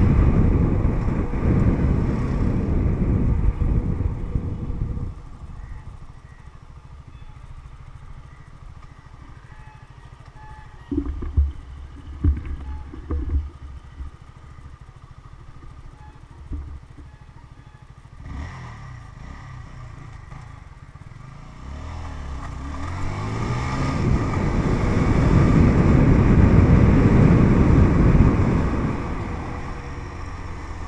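Motorcycle being ridden with wind noise on the microphone, easing off about five seconds in to a quieter low idle broken by three short louder sounds. From about eighteen seconds in the engine pulls away, rising in pitch, and the engine and wind noise build to their loudest before easing near the end.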